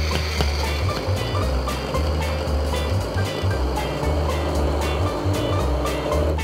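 Handheld immersion blender running steadily in a steel pot, puréeing tomato cream soup to a smooth texture. Background music with a steady beat plays under it.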